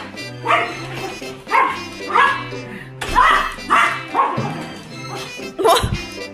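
Small dog barking, about six short high barks spread over several seconds, over background music.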